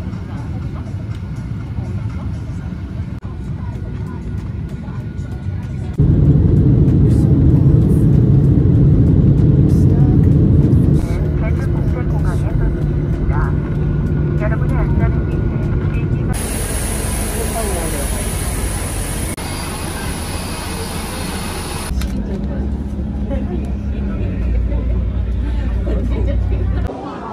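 Airliner cabin noise across a series of short edited clips: a steady engine and airflow rumble that changes abruptly in level at each cut. It is loudest for about five seconds starting some six seconds in.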